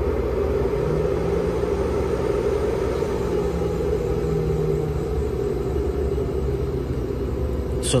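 Steady machine whir and low hum from the power equipment drawing about 23.7 amps from an LG18650-MH1 40-cell scooter battery pack during a discharge test. A faint steady tone sits in the hum through the first half.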